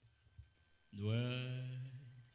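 A man's voice drawing out a single word, 'two', held for about a second and falling slightly in pitch, after a near-silent first second.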